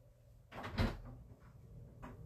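A short scuffing rustle about half a second in, ending in a dull thump, over a low background hum.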